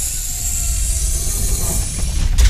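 Logo-intro sound effect: a steady hiss over a deep rumble, with no tune or beat.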